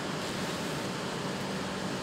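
Steady background hiss of room noise with a faint low hum, and no distinct sounds.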